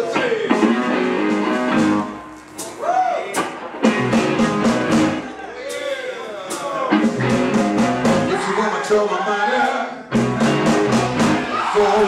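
Live electric blues band playing: electric guitars over drums, with notes that bend up and down and the band dropping back briefly about two seconds in and again about ten seconds in.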